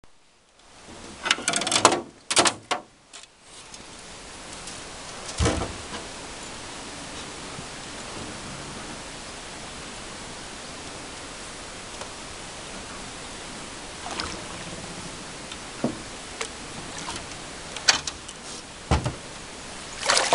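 Steady, even hiss of wind on the microphone. A quick run of loud clattering knocks comes a second or two in, a single thump about five seconds in, and a few sharp taps near the end.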